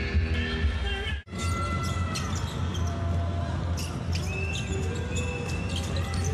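Basketball being dribbled on a hardwood arena court, over arena crowd and music, with a sudden brief dropout about a second in.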